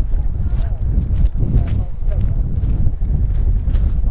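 Wind buffeting a body-worn action camera's microphone, a heavy, uneven low rumble, with faint speech in the middle.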